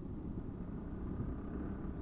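Motorcycle running at road speed, heard from the moving bike as a low, steady rumble of engine and road noise.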